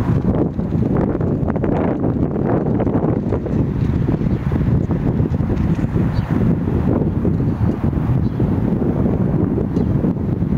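Wind buffeting the microphone: a steady, low rumbling noise.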